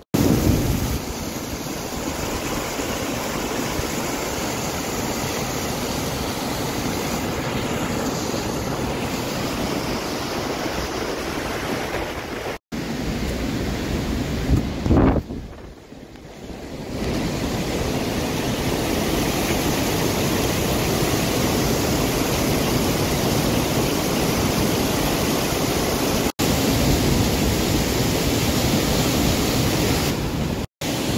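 Floodwater rushing steadily through a reservoir's bellmouth overflow spillway, swollen by storm rain, mixed with wind buffeting the microphone. The noise drops away briefly about halfway through and cuts out for an instant twice.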